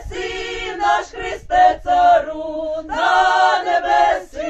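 Ukrainian folk ensemble of women's voices with one man singing unaccompanied in close harmony, a Christmas carol (koliadka); held notes in several voices, broken by short breaths between phrases.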